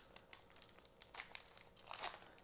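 Foil wrapper of a Donruss Optic basketball-card pack being torn open and crinkled by hand, a fairly quiet run of irregular crackles.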